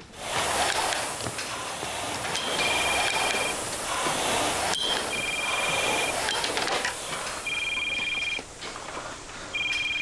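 Mobile phone ringing: four long electronic rings, each two high tones sounded together, about two seconds apart. Under them the steady whoosh of a rowing machine's air flywheel, which eases off near the end.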